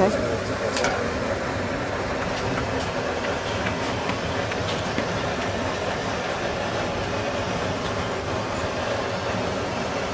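Steady, even background noise with indistinct voices.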